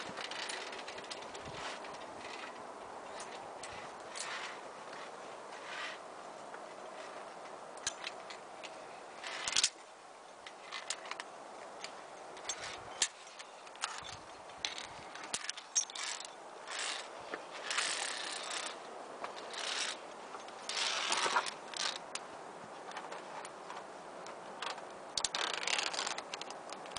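Via ferrata carabiners clicking and sliding on the steel safety cable: irregular metallic clicks, with longer scrapes in the second half.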